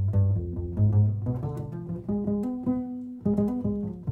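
Upright double bass played pizzicato: a solo line of plucked notes, low in register at first and climbing into higher notes after about two seconds.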